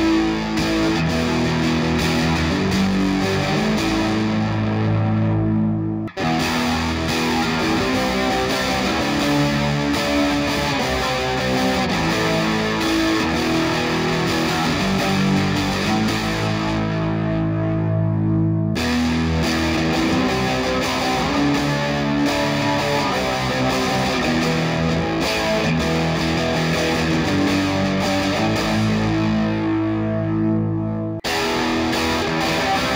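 Electric guitar, a Squier Bullet Stratocaster with Fender Noiseless pickups, played through an amp on a distorted setting: a riff played over and over. It breaks off briefly about six seconds in and again about nineteen seconds in before starting once more.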